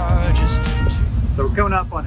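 Background music fading out at a cut, replaced by a loud, irregular low rumble of wind buffeting the microphone on a moving boat, with a man starting to talk near the end.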